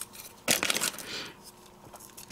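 Small cardstock die-cut pieces being handled: a sharp click about half a second in, then brief crinkling and rustling of paper.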